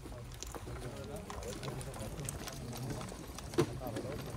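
A group of police officers talking over one another, indistinct, with scattered small clicks and knocks and one sharper click about three and a half seconds in.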